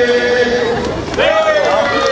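Men's barbershop chorus holding its final chord, released about half a second in; a little past one second a single voice gives a short rising-and-falling whoop.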